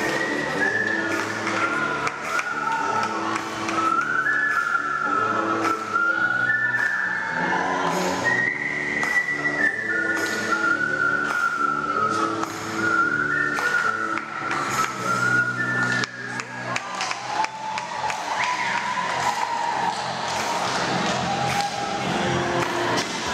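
Stage music: a high melody of long held notes, stepping from pitch to pitch, over a steady lower accompaniment. The melody thins out about two-thirds of the way through.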